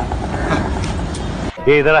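Steady background noise, then a man's voice near the end with its pitch sweeping up and down.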